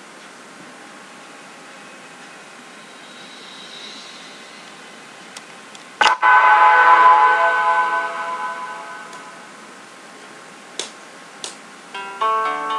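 Film-intro sound effect: low hiss, then a sharp hit about halfway through, followed by a ringing chord of many tones that fades over about four seconds. Two short clicks come near the end.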